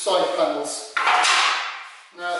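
A long painted strip scraped as it slides across a folding workbench, starting suddenly about a second in and fading away, after a man's voice in the first second.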